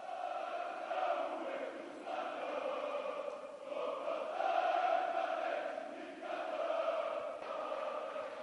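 Volleyball fans chanting together in unison, in repeated phrases of a second or two each with short breaks between them.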